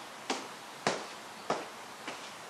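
Athletic shoes landing on a bare concrete floor as feet step side to side from a plank, three light taps a little over half a second apart.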